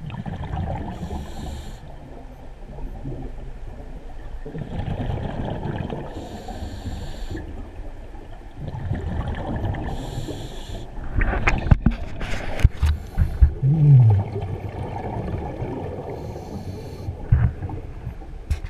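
Scuba diver breathing underwater through a regulator: a hiss on each inhale about every four to five seconds, with the low bubbling rumble of exhaled air between breaths. About two-thirds of the way through, a burst of loud knocks and a short low moan.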